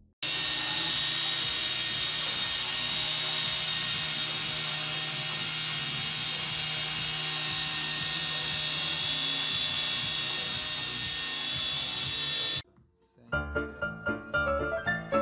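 MJX X708P quadcopter hovering, its motors and propellers making a steady high-pitched whine over a low hum. The sound cuts off suddenly about a second before the end.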